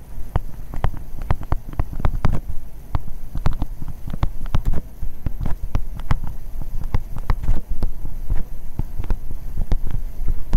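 A stylus writing on a tablet: an irregular run of short knocks and taps, several a second, as the strokes of handwriting land, over a steady low hum.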